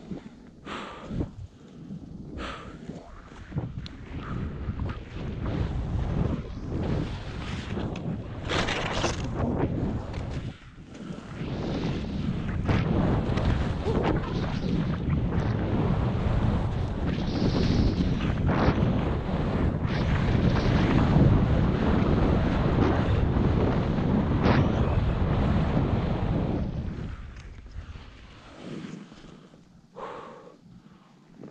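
Wind rushing over the microphone as a skier runs downhill, with skis scraping and chattering over snow and bumps in sharp bursts. It builds over the first several seconds and dies down near the end.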